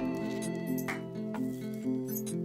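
Instrumental background music: held chords that change in steps, over a light, regular beat.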